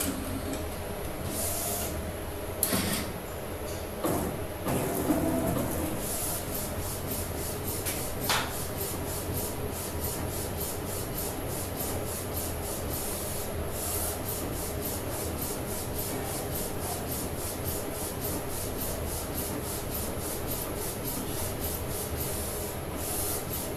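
Neixo A3 direct-to-garment flatbed printer at work. A few clunks and scrapes in the first seconds and a click near eight seconds as the platen moves into place, then the printhead carriage shuttles back and forth in an even rhythm of about two to three strokes a second, laying down white ink on the garment.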